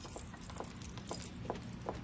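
Soft footsteps of people walking, a series of light steps about three a second, over a faint low hum.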